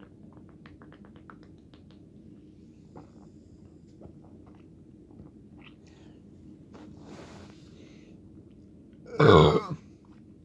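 A few faint clicks as sparkling water is drunk from a plastic bottle, then one loud burp near the end, brought up by the carbonated water.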